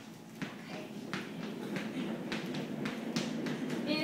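Footsteps on a hard floor: a run of light, irregular taps.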